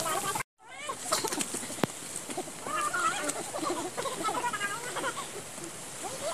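Indistinct, fairly quiet voices of people talking, with a few sharp clicks, after the sound cuts out completely for a moment about half a second in.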